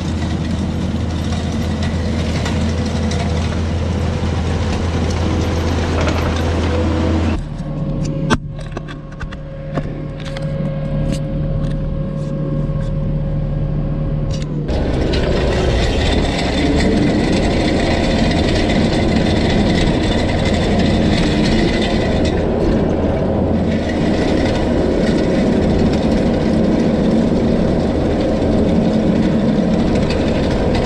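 Skid steer engine running steadily under load while it drags a grading attachment over a gravel road. The sound changes abruptly twice: a quieter stretch with scattered clicks and rattles comes in about a third of the way in, and a louder run of engine and grinding gravel starts about halfway and carries on to the end.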